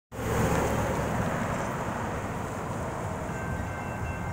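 A vehicle passing close by at a railroad crossing, with a loud, steady rumble of engine and tyres. Near the end a crossing's electronic bell starts ringing, a thin high tone over the rumble, as the warning signals activate.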